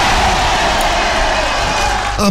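Canned crowd applause and cheering played as a sound effect for a correct quiz answer. It is a steady burst of about two seconds that stops shortly before the end.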